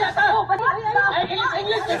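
Speech only: a person talking, apparently in a Visayan language that the recogniser did not write down.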